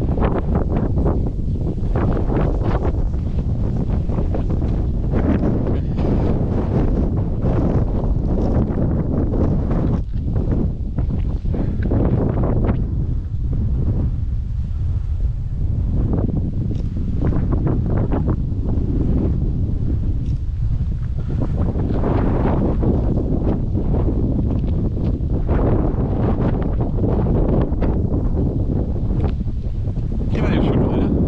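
Wind buffeting the camera microphone: a steady rumble that swells and eases in gusts.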